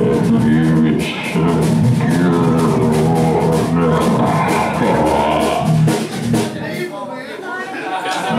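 Live rock band playing: drum kit, electric guitar and bass guitar with a singer at the microphone. The playing thins out and drops a little in loudness near the end.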